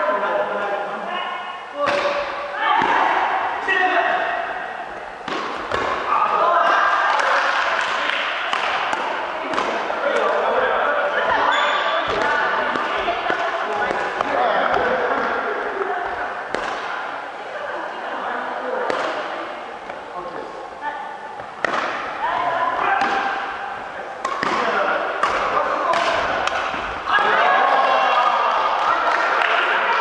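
Badminton doubles rally on a wooden sports-hall floor: sharp racket hits on the shuttlecock and thuds of footsteps, scattered irregularly, over continuous chatter of voices in the hall.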